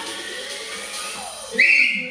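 A short, loud whistle blast: one steady high note about half a second long, near the end, blown by a fitness instructor to cue the class.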